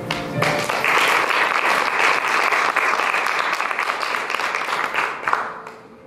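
Audience applauding: a burst of clapping starts about half a second in, holds steady, and dies away near the end.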